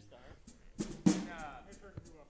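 Two drum hits on a rock band's drum kit about a second in, the second the louder, ringing briefly.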